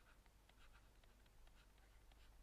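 Near silence, with faint short scratches of a stylus writing on a tablet.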